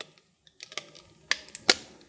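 Clear plastic packaging being peeled off a toy phone, giving a few short sharp crackling clicks, the loudest near the end.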